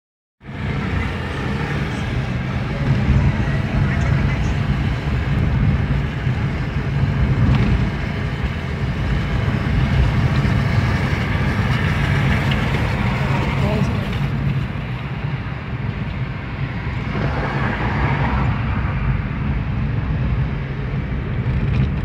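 Steady engine and road noise heard from inside a car's cabin while driving in traffic, with a faint murmur of indistinct voices.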